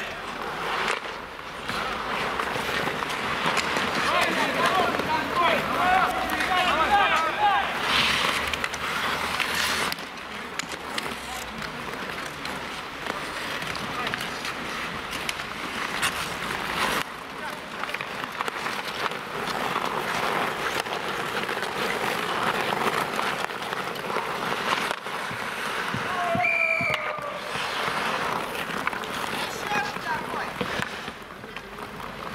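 Ice hockey play: skate blades scraping and carving on the ice, with sticks and puck clacking. Players shout a few seconds in and again near the end.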